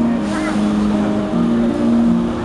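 A man singing slow, long-held notes over a strummed acoustic guitar in a street performance.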